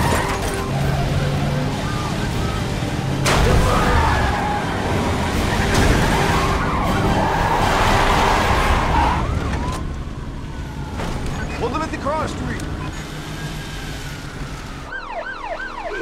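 Vehicle chase: engines running under heavy road noise, with sharp hits at the start and about three seconds in, then police sirens wailing in quick rising-and-falling sweeps from about ten seconds on.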